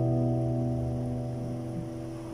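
Acoustic guitar's last strummed chord ringing out, its notes fading away slowly and evenly.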